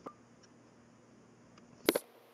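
Computer mouse clicks against faint room hiss: a faint click at the start and a sharper, louder click just before the end.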